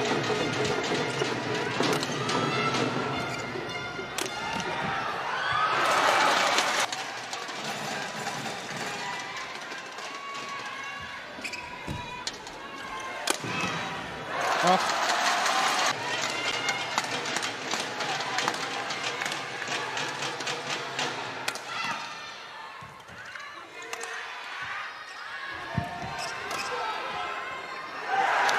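Badminton rally: sharp racket strikes on the shuttlecock and shoe squeaks on the court, with crowd cheering swelling twice, about a third of the way in and again around the middle.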